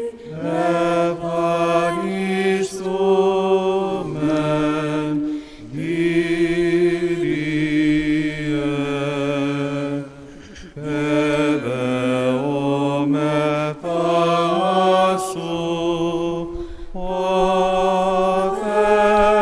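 Slow Greek Orthodox (Byzantine) church chant sung by cantors: long, drawn-out melismatic notes that step from pitch to pitch over a lower held voice, with a short pause for breath about ten seconds in.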